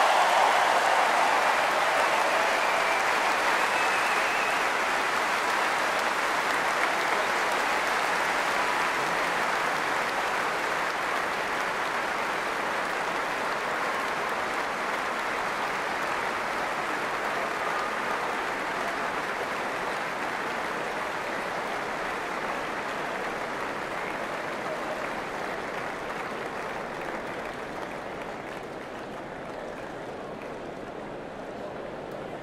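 Large stadium crowd applauding steadily, a dense wash of clapping that slowly gets quieter.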